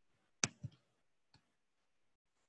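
Faint clicks at a computer: two sharp clicks about a fifth of a second apart just under half a second in, then a single fainter click about a second later.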